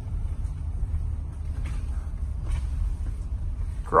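Low, steady rumble of road and tyre noise inside the cabin of an electric Tesla Model Y rolling slowly along a street, with a few faint soft clicks.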